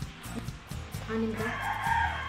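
A long pitched call that rises and then falls, lasting about a second and starting about halfway in, over steady background music.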